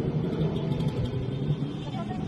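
Motor scooter engine running steadily while riding, with road and wind noise.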